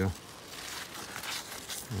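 Cucumber leaves and vines rustling and crinkling irregularly as a hand pushes through them.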